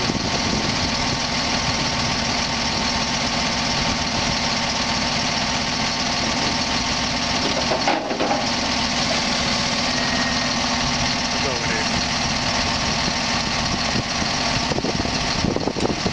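Diesel engine of a 2008 Freightliner M2 106 dump truck running at a steady speed while it powers the hydraulic hoist, which raises the dump bed and then lowers it. The sound breaks briefly about halfway through.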